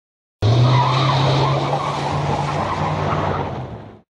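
Tyre-screech sound effect: a loud squeal that cuts in suddenly about half a second in, with a steady low hum under it, and fades out toward the end.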